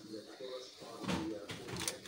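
Quiet talking, with a few short clicks in the second half.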